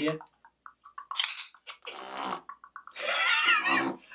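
Beatboxing mouth sounds: a run of short clicks and pops, then near the end a loud, buzzing raspberry blown through the lips.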